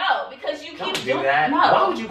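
Speech throughout, with one sharp smack about halfway through.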